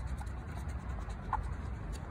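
Short scratching strokes on an instant scratch ticket, its coating rubbed off the hidden letter spots.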